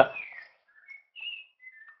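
A pause in the speech: near silence on a gated webinar voice line, broken by a few faint, brief whistle-like chirps.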